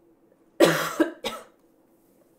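A woman coughing: three coughs in quick succession starting about half a second in, the first the longest.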